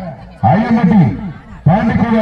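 A person's voice speaking loudly in drawn-out phrases with rising and falling pitch, pausing briefly near the start and again about one and a half seconds in.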